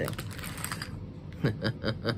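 Small board-game animal meeples and their plastic packaging being handled: quiet rustling with small ticks, then a quick run of four or five sharp clicks about a second and a half in.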